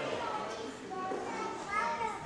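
Children's voices chattering and calling out, several at once, with no single clear speaker.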